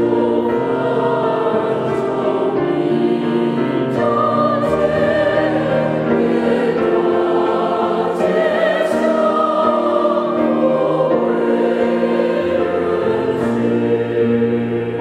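A church choir singing a Chinese hymn in several parts, with notes held and changing chord every second or two.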